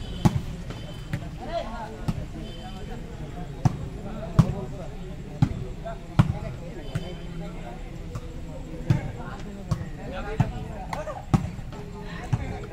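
Volleyball being struck by hands during a rally: sharp slaps at irregular intervals, about one every second or two, over the chatter of a crowd of spectators.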